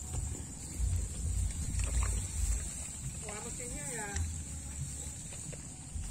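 Low, uneven rumbling of wind on the microphone while walking through a rice field, loudest in the first half. A person's voice is heard briefly around three to four seconds in, over a steady high hiss.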